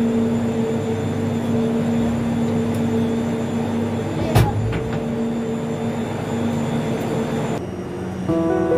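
Steady mechanical hum and rumble of a ropeway gondola cabin rolling slowly through the station machinery, with a single knock about four seconds in. The hum cuts off suddenly shortly before the end.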